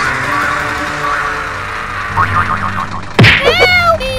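Comic cartoon sound effects over background music: a loud whack about three seconds in, followed at once by a springy boing that glides in pitch.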